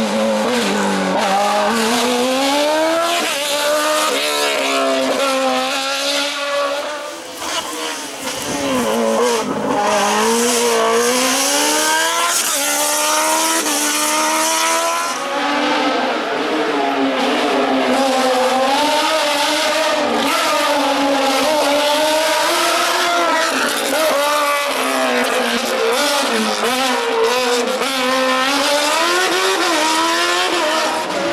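Open-cockpit sport prototype race car engine revving hard through a cone slalom. Its pitch climbs and drops over and over as the driver accelerates, shifts and lifts between cones. It falls away briefly about seven seconds in, then comes back up.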